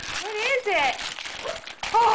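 Wrapping paper crinkling and tearing as a small terrier puppy rips at a gift, with two high-pitched rising-and-falling vocal sounds in the first second.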